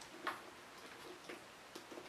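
Three faint metal clicks from the clip hardware of a Coach Rogue 25 handbag's strap as it is unhooked from the bag.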